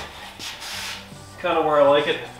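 A short, soft rustle about half a second in, then a man's voice near the end.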